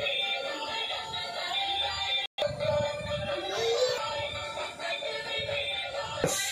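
Tinny electronic music with synthesized singing, played by a battery-operated light-up toy bus. The sound cuts out for an instant a little over two seconds in.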